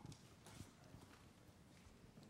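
Near silence: room tone with a few faint soft taps, the clearest about half a second in.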